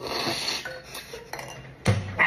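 A metal spoon clinking and scraping against dishes on a table, with a sharper knock near the end.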